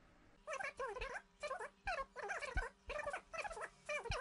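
A voice recording played back through an online voice-changer effect: short bursts of speech-like sound with gliding pitch, so altered that the words cannot be made out.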